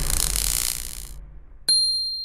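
Intro sound effects: the tail of a whoosh fades away, then about one and a half seconds in a sharp metallic 'ting' strikes and rings on one high tone, dying away slowly.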